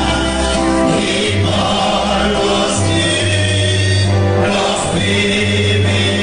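A group of men singing a Christian worship song together with guitar and deep, sustained bass notes under the voices, changing every second or two.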